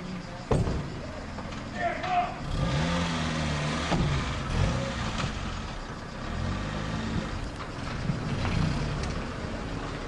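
A small hatchback's door shuts with a sharp knock, then its engine runs as the car pulls away, the pitch rising and falling several times.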